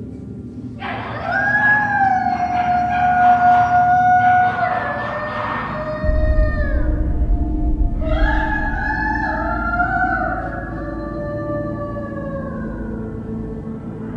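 Long, drawn-out wailing cries from a solitary confinement unit, over a low steady drone. One wail starts about a second in and is held for several seconds; a second, slowly falling wail begins about eight seconds in, with a deep low rumble underneath from about six seconds in.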